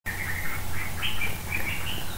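Birds chirping in the background, a quick string of short, high chirps, over a low steady hum.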